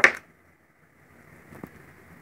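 A sharp clack as a frosted loose-powder jar is handled, followed by near quiet and one faint click about a second and a half in as its lid comes off.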